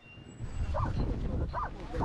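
Steady low wind rumble on the microphone, with three short animal calls under a second apart.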